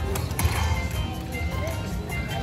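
Dragon Link slot machine playing its Hold & Spin bonus music, with short electronic chimes as gold orbs land on the reels during a respin, over a busy casino's background hum and chatter.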